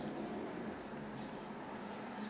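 Quiet room background with a faint steady low hum and no distinct event.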